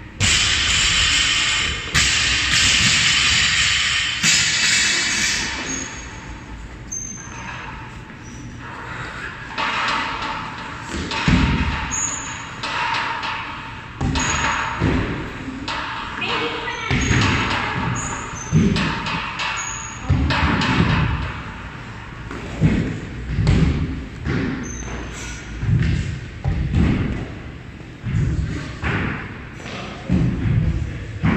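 Gym workout noise: repeated dull thuds of feet and gear landing on wooden plyo boxes and rubber flooring, coming more often in the second half. A loud rushing noise fills the first few seconds, and voices carry in a large hall.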